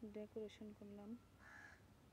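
Crow cawing faintly: about four short caws in quick succession in the first second or so.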